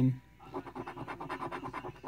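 A coin scratching the coating off a scratch-off lottery ticket in rapid, even back-and-forth strokes, about eight a second.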